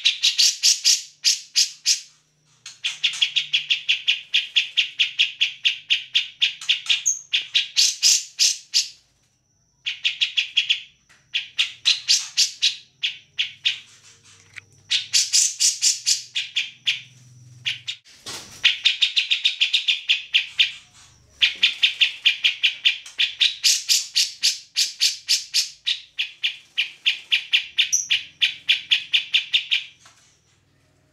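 Cucak jenggot (grey-cheeked bulbul) calling loudly in long runs of rapid, repeated harsh notes. The runs come in phrases of a few seconds, broken by short pauses.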